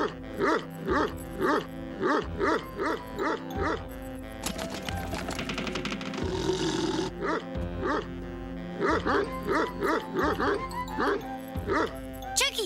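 Large dog barking over and over, about two barks a second, in two runs with a pause in the middle, over background music.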